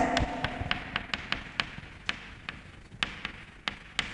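Chalk writing on a chalkboard: an irregular series of sharp taps and clicks, several a second, as the chalk strikes and lifts off the board.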